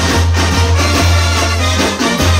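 Sinaloan brass banda playing live through the stage PA: a horn section over sustained low bass notes and a steady beat.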